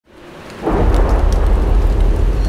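Thunderstorm sound effect: a hiss of rain, then a deep, loud rumble of thunder comes in about two-thirds of a second in and carries on.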